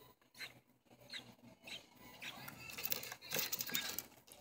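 Faint, short high-pitched cheeps from a baby American robin, with light rustling and a few soft clicks in the second half.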